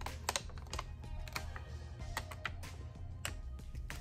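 Clear transfer mask film being peeled off a heat-pressed canvas, crackling in irregular small clicks and snaps as it comes away. Background music plays under it.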